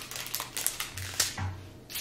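Small plastic bags of diamond-painting drills crinkling, with the drills rattling inside as a strip of bags is handled and set down on paper: a quick, irregular run of small clicks.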